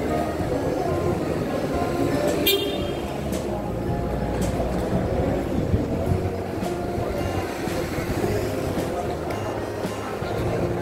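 Busy airport arrivals curbside ambience: a steady rumble of vehicles and indistinct voices, with music playing throughout. A brief pitched sound stands out about two and a half seconds in.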